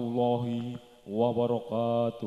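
A man's voice chanting the Islamic greeting "Assalamualaikum warahmatullahi wabarakatuh" in long, drawn-out held notes: two sustained notes with a short break just before the middle.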